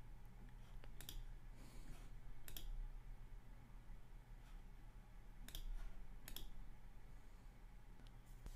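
About four faint, sharp clicks of a computer mouse, spaced unevenly, over a low steady hum.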